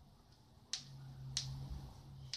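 Cat growling in a low steady tone, starting with a sharp short spit about two-thirds of a second in and broken by a second spit about two-thirds of a second later: a cat warning off another.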